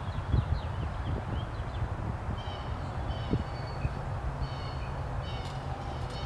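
Small birds chirping and whistling in short high calls, in several spells, over a steady low rumble. A few soft knocks come near the start.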